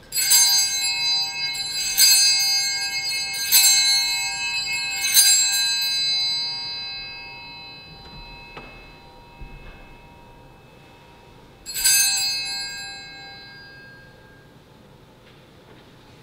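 Altar bell struck four times about a second and a half apart, each ring fading slowly, then struck once more about twelve seconds in: rung at the consecration of the chalice during Mass.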